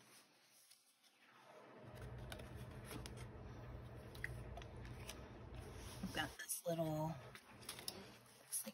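Cardstock die cut and paper journal pages rustling and sliding as they are handled, starting about two seconds in. A short voice-like sound follows near the end.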